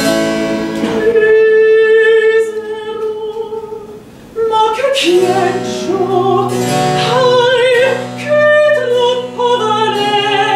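Female singer performing Baroque vocal music with cello and harpsichord accompaniment. A long held note fades out in the first seconds; after a short break about four seconds in, the singing resumes with vibrato over the cello's sustained bass notes and the harpsichord's plucked chords.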